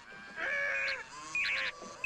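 R2-D2's synthesized droid voice: electronic squeals and fast warbling whistles in short bursts, as the droid tussles over the lamp.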